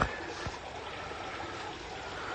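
Koi pond water trickling and running steadily, the flow from the pond's restarted filter system.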